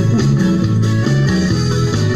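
Instrumental break in an upbeat sertanejo country song: guitar with a moving bass line, no singing.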